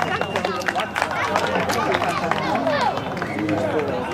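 Several people talking and calling out over each other in an open-air babble, with scattered sharp clicks.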